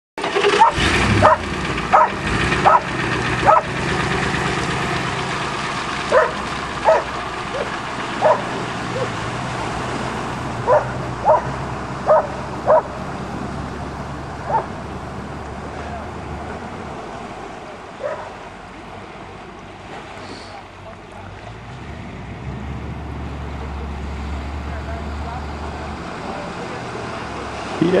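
A dog barking in short runs of sharp single barks, about fourteen in all over the first eighteen seconds, with a quick run of five in the first few seconds. A steady low rumble runs underneath.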